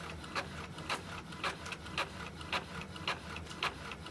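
Epson EcoTank ET-2700 inkjet printer printing a text page: a steady low mechanical hum with regular clicks about twice a second as the print head makes its passes and the paper advances.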